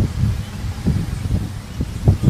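Wind buffeting an outdoor microphone: an uneven low rumble with a faint hiss above it.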